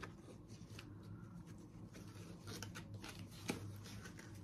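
Faint rustling and crinkling of packaging being handled: a cotton drawstring bag being pulled open and a padded plastic pouch lifted out, with one sharper click about three and a half seconds in.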